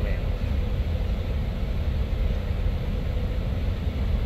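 Steady low rumble of an idling semi-truck diesel engine, heard from inside the cab.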